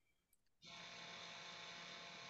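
Near silence: a faint steady hiss of line noise, with dead silence for the first half second or so before it fades in.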